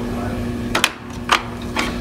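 Three short clicks and knocks, about half a second apart, as the seed plate is handled and lifted off the hub of a John Deere MaxEmerge vacuum seed meter. A steady low hum runs under them.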